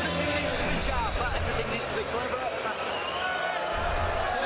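Music playing over an arena PA with crowd hubbub and overlapping voices shouting, steady throughout.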